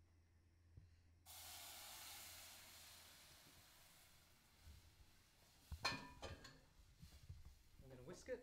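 A hiss at the stove that starts suddenly and fades away over a few seconds, then a quick run of metal clinks and knocks as the curd mixture is scraped out of a stainless steel mixing bowl into a saucepan.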